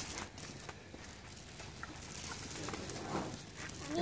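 Faint outdoor background with a few scattered light clicks and steps of sandalled feet on concrete.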